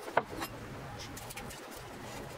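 Paper masking tape being pulled and pressed around a wooden cleaver handle: two short squeaky rubs in the first half second, then faint small handling ticks.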